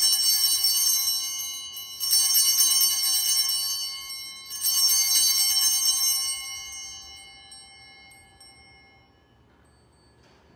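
Altar bells (Sanctus bells) shaken in three jangling rings about two and a half seconds apart, the last ringing out and fading away near the end. They mark the elevation of the host at the consecration of the Mass.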